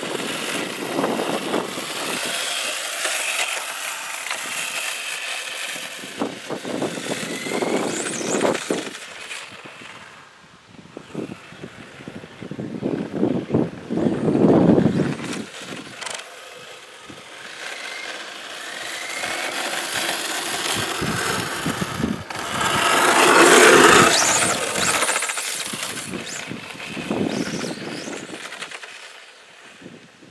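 Electric RC drag car's Velineon 3500kV brushless motor and drivetrain whining over the sound of its tyres on asphalt. The whine rises in pitch as the car speeds up, comes and goes as it runs back and forth, and is loudest about three quarters of the way through.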